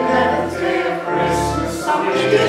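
Church choir singing, holding sustained chords that change about once a second.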